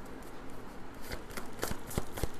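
Tarot cards being shuffled by hand, the cards flicking against each other with a few sharp snaps in the second half.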